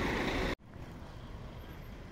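Bus-station platform noise with coach engines running, cut off suddenly about half a second in, then a quieter steady outdoor street background.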